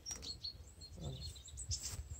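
Small birds chirping now and then, short high chirps scattered through the moment, over a low rumble of wind on the microphone.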